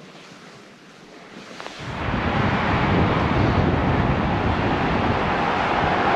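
A faint hiss for the first couple of seconds, then loud, steady wind noise buffeting the microphone on a moving scooter.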